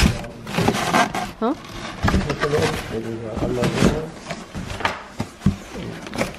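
Hands rubbing and scraping against the flaps inside a corrugated cardboard moving box, with short, uneven knocks and rustles of cardboard.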